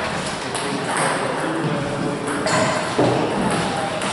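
Table tennis balls clicking sharply off paddles and tables, a few hits spread out, in a large hall with people chatting.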